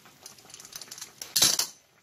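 Light clicks and taps of kitchen utensils being handled, then a brief, loud clatter about a second and a half in.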